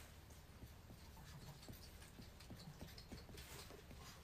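Near silence with faint, irregular light taps and ticks, like small handling sounds at a desk.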